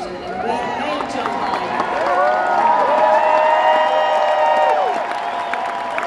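Large arena crowd cheering and shouting, many voices overlapping in rising and falling whoops over a wash of applause. It swells to its loudest in the middle, then eases near the end.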